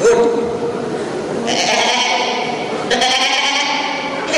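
A boy's voice through a stage microphone, giving a series of short, high calls, each about a second long, beginning about one and a half and three seconds in.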